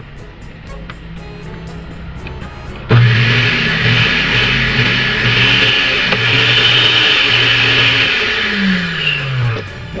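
Electric blender motor base, with the jar off, switched on about three seconds in and running loudly at speed. Near the end it winds down with falling pitch.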